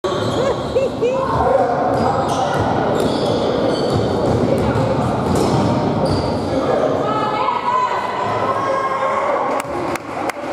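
Sounds of a youth basketball game in a gym: many voices calling and shouting, echoing in the hall, with short squeaks of sneakers on the hardwood court.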